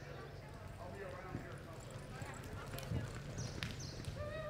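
A horse's hooves on the dirt floor of an indoor arena, irregular hoof thuds as the horse moves off from a walk into a lope, over a steady low hum.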